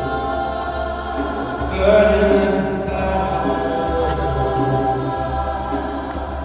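Gospel choir singing sustained harmonies over a low steady bass tone, swelling louder about two seconds in.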